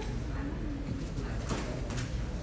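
A bird's low cooing call over a steady background hum, with a soft click about one and a half seconds in.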